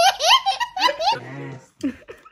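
A toddler laughing hard in rapid, high-pitched bursts, which cut off abruptly a little over a second in. A person's laughter and voice follow.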